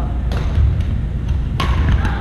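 A volleyball struck twice by hand, a light hit and then a sharper one about a second later, each echoing briefly in a large gym over a steady low room rumble.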